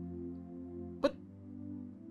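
Soft background film score of sustained, steady chords. A single brief, sharp sound cuts in about a second in.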